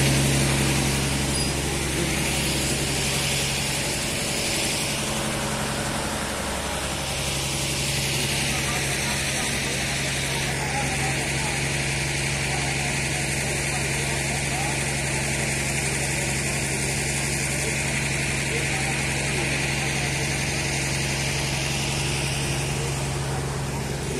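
Steady mechanical hum with a low drone, like an engine running at idle, with faint voices behind it.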